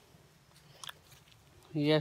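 Near silence with one faint click just under a second in, then a man's voice begins near the end.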